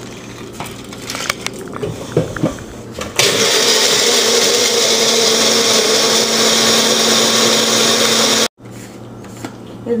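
Personal blender running, blending milk, ice and mango into a milkshake: it starts abruptly about three seconds in, runs steadily for about five seconds and cuts off suddenly. Light knocks from handling the cup come before it.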